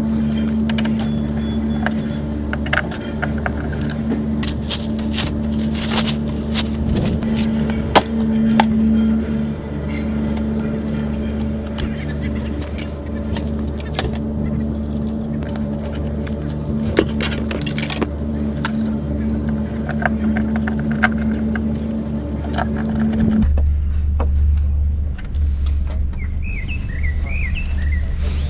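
Small clicks, knocks and rustling of plastic as a Fiat 500's rear tail light unit is unscrewed, unplugged and swapped for a new one, over a steady low hum that changes abruptly near the end.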